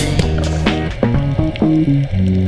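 Electronic dance music with a steady kick-drum beat that drops out at the start, leaving held bass and synth notes stepping in pitch.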